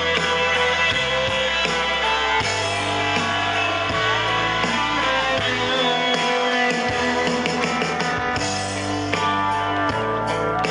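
Rock band playing live, an electric guitar solo with bent notes over bass guitar and drums.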